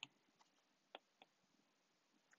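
Near silence with a few faint ticks: a stylus tapping on a tablet's glass screen while writing by hand.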